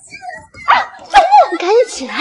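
A woman's loud, wordless wailing cries, several in a row with the pitch swooping up and down, starting about half a second in.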